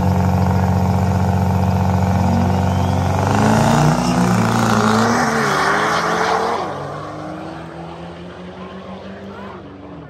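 Diesel drag-racing truck engine running loud, its pitch rising about three seconds in as it pulls away, then fading over the last few seconds.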